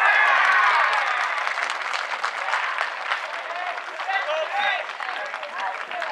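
Baseball crowd in the stands cheering and clapping. A loud swell of many voices breaks out at the start and eases over the next seconds, with steady clapping and single shouts rising over it near the end.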